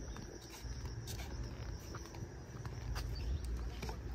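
Footsteps of someone walking in flip-flops on a concrete path, a few irregular slaps, over a steady low rumble of wind on the microphone.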